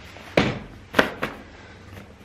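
Lightweight folding camp chair's metal pole frame knocking as the freshly assembled chair is set upright and settled on its legs: two sharp knocks about half a second apart, then a lighter one.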